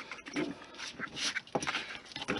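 Hobby knife and thin styrene strips being handled and cut on a cutting mat: a few small, sharp clicks and soft scrapes.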